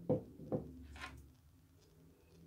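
Two dull knocks about half a second apart, from a drinking glass being set down and handled on a desk, followed by a short breathy rush.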